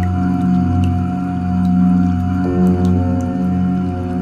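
Chanted 'Om' mantra held as a long, deep drone over ambient meditation music, with a new layer of tones coming in about two and a half seconds in. Faint high ticks are sprinkled over it.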